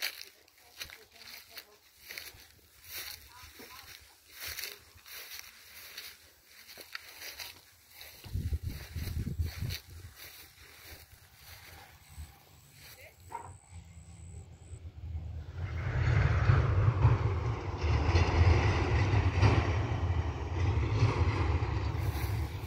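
Footsteps crunching through dry pasture grass as the phone is carried. From about eight seconds in, wind rumbles on the phone's microphone, then gets much louder and denser over the last six seconds.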